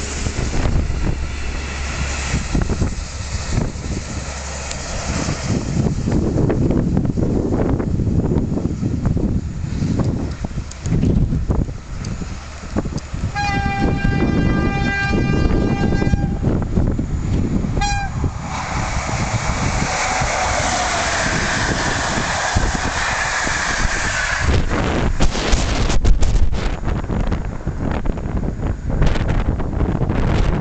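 A yellow track-maintenance train rolls past with wind buffeting the microphone. A train horn then sounds one long steady note about thirteen seconds in, followed by a short toot about two seconds later.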